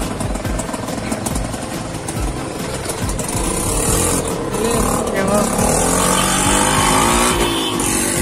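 Auto-rickshaw engine and road rumble heard from inside the open cabin while riding. In the second half the engine note rises as it picks up speed.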